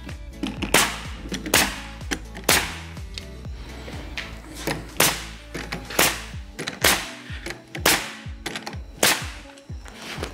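Nail gun firing nails through wooden trim into a shed door, a series of sharp shots roughly one a second.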